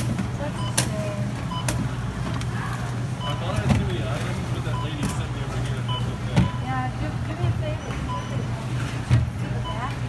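Supermarket checkout sounds: plastic syrup bottles knocking down onto a running conveyor belt over a steady low hum, with short electronic beeps recurring every second or two. The three loudest knocks come about a third of the way in, past halfway and near the end.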